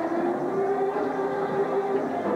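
Gospel church music with one long held note that drifts slightly upward in pitch and stops near the end.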